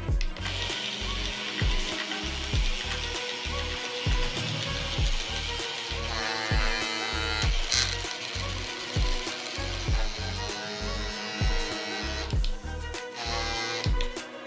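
Small DC motor of a homemade cardboard mini boring machine running with a whirring mechanical rattle. It starts about half a second in and stops suddenly near the end. Background music with a steady beat plays underneath.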